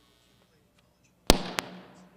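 Two sharp bangs about a third of a second apart, the first the louder, with a short fading tail after them.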